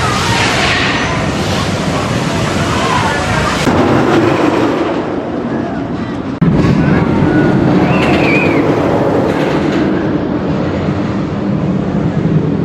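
Loud, steady outdoor rumbling noise with faint voices mixed in. Its character changes abruptly about four seconds in and again about six and a half seconds in.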